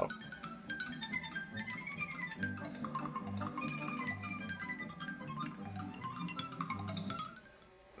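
Film soundtrack music played back from a VHS tape by a Panasonic Hi-Fi stereo VCR through small desktop speakers: quick runs of short, bright notes climbing and falling over a pulsing bass line. The music stops shortly before the end. It is the sign that the VCR's audio output works.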